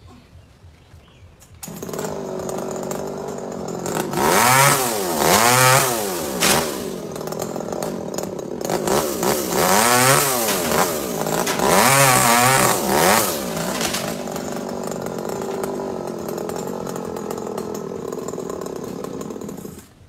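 Two-stroke chainsaw starting suddenly about two seconds in and running. Its engine revs up and down several times in two bursts, then settles to a steady run before cutting off abruptly at the end.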